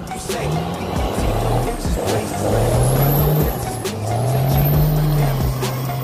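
Second-generation Dodge Ram 2500's Cummins turbo-diesel engine revving, rising and falling in two long swells as the truck spins in beach sand. A faint high whistle climbs with the revs.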